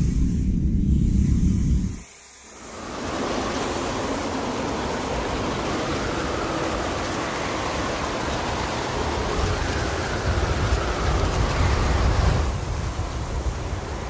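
Leaf blower running steadily, with a broad rush of air from its tube as it blows grass clippings. It begins about two and a half seconds in, after a loud low rumble cuts off abruptly, and its pitch wanders slightly up and down.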